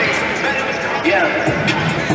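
Basketballs bouncing on the hardwood court and thudding against each other during warm-up drills, over a steady background of voices from the arena crowd.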